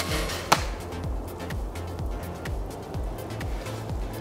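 Recurve crossbow firing: a sharp, loud snap of the released string and limbs, followed about half a second later by a second, fainter crack.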